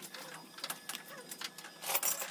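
Plastic spreader scraping and clicking against mesh and stone strips in a wooden mould, in short irregular strokes, with a louder scrape near the end.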